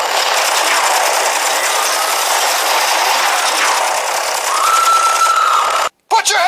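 A sound-effect clip played from a soundboard app: a steady, noisy rushing sound, joined about four and a half seconds in by a steady high tone. Both cut off suddenly just before the end.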